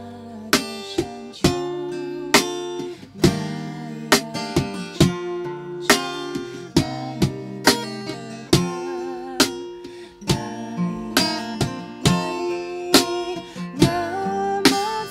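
Acoustic guitar strummed, with sharp strokes a second or less apart and chords left to ring between them.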